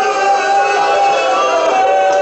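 A man's voice chanting a melodic mourning recitation, holding long notes with wavering ornaments, amplified through a hall PA.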